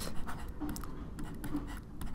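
Pen stylus scratching and tapping on a tablet surface while handwriting, heard as a run of faint small clicks.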